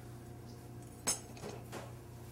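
A chef's knife set down on a wooden cutting board: one short clink about a second in and a fainter tap later, over a steady low kitchen hum.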